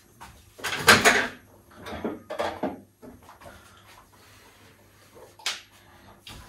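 Kitchen clatter of a drawer and dishes being handled: a loud rattle about a second in, two smaller knocks around two seconds in, and a sharp click near the end.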